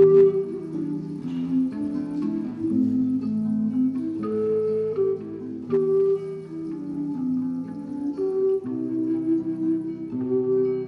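A long wooden flute, held and blown sideways, playing a slow melody of sustained low notes.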